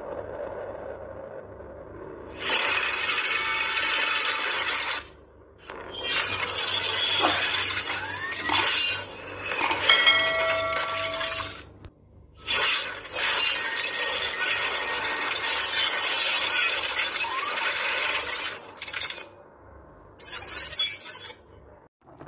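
Glass-shattering sound effects: several long bursts of breaking glass and tinkling shards, with short gaps between them and a brief ringing tone near the middle.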